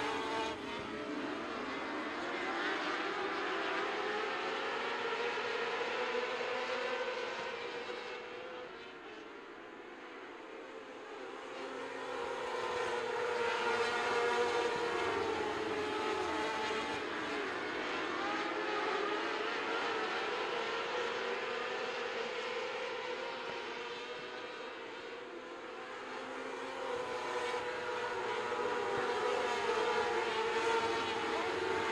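A field of winged micro sprint cars racing on a dirt oval, their high-revving 600cc motorcycle engines rising and falling in pitch as they go around. The sound fades twice, about a third of the way in and again near the end, as the pack moves away down the far side.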